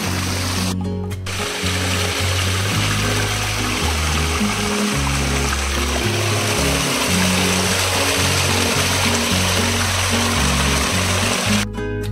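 Background music with a steady bass line over the rushing of a small stream cascading down rocks. The water sound breaks off for a moment about a second in.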